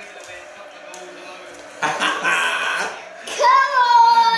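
A man and a boy cheering and laughing as they celebrate a goal. About two seconds in comes a laugh and a shout of "come on", and near the end a long, high-pitched held shout, the loudest sound.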